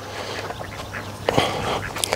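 Domestic ducks quacking in the background.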